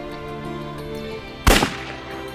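A single loud handgun shot about one and a half seconds in, fading quickly, over soft sustained background music.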